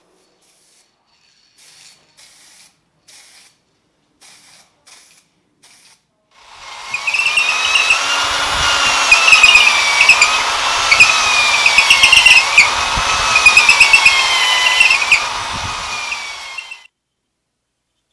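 Electric drill with a large twist bit boring lengthwise into the end grain of a wooden hammer handle. The motor starts a few seconds in and runs loud, its pitch dipping and recovering again and again as the bit loads up. It stops suddenly near the end.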